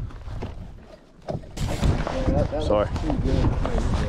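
Wind rumbling on the microphone, with a man's voice coming in about two seconds in.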